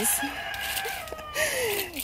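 A rooster crowing: one long call that drops in pitch at the end.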